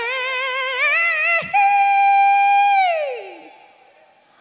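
A woman singing solo into a microphone, her voice amplified through the PA: a phrase sung with vibrato, then a long high note held from about a second and a half in that slides down in pitch and fades away near the end.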